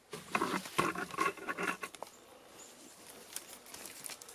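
Dry sticks and brush rustling and scraping as branches are handled and laid across a stick frame, busiest in the first two seconds, with a single click about two seconds in, then only faint rustling.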